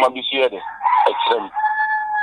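A rooster crowing: one long call of about a second and a half that holds a steady pitch, starting just as a man's speech breaks off.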